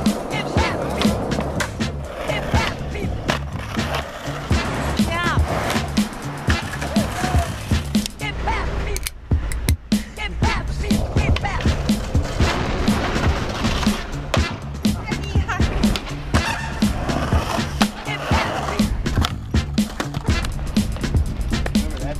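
Skateboard on concrete, with rolling wheels and sharp clacks of tail pops, grinds and landings, mixed under a music soundtrack with a steady beat.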